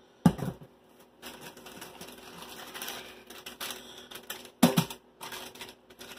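Food packaging being handled: plastic wrappers crinkling and packages clicking and knocking against each other, with a sharper knock near the start and another short louder sound a little over four seconds in.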